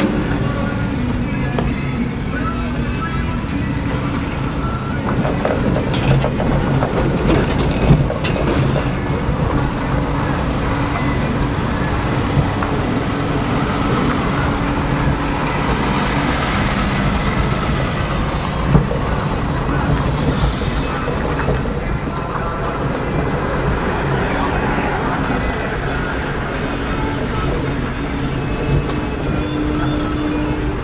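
A vehicle engine running steadily with a low drone, broken by a few short knocks.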